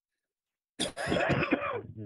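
A person coughs and clears their throat, a short loud burst starting about a second in.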